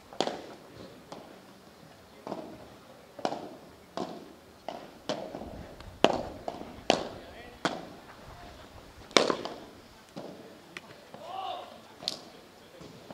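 Padel rally: the ball is struck by padel rackets and bounces off the court and glass walls, a string of sharp pops coming every half second to a second. A short voice is heard near the end.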